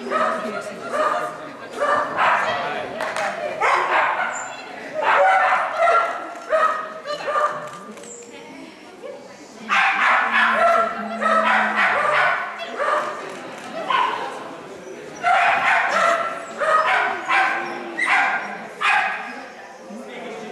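Small dog barking excitedly in quick runs of short, high yaps, in bouts with brief pauses between them.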